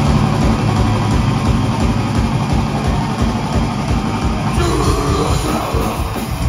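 Metal band playing live at full volume: fast drumming under distorted electric guitar and bass, after the full band comes in together just before. A shouted vocal comes in near the end.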